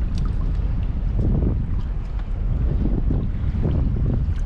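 Wind buffeting the microphone on a small boat on open sea: a steady low rumble, with a few faint clicks.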